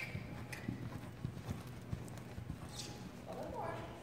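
A horse's hooves thudding dully on soft arena sand as it canters, in an uneven repeating beat. A voice speaks briefly near the end.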